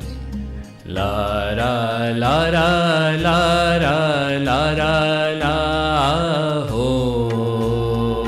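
A man singing a slow Hindi film song in long, ornamented phrases over an instrumental backing with a steady low pulse; the voice comes in about a second in and settles on a held note near the end.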